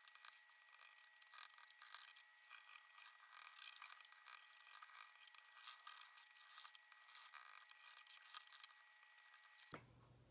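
Faint, rapid scratching and rubbing of oil pastels worked over construction paper in sped-up footage, with a faint steady high tone underneath that stops just before the end.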